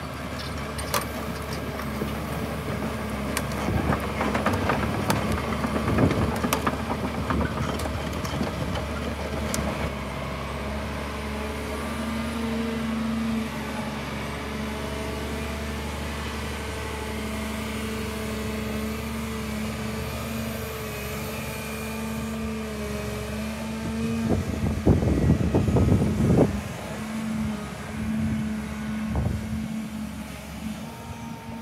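Volvo EC290BLC crawler excavator's diesel engine running steadily with hydraulic work as the machine slews and moves its boom and bucket; the engine note rises a little about twelve seconds in. Bursts of clanking and knocking come about four to seven seconds in and again, loudest, near the end.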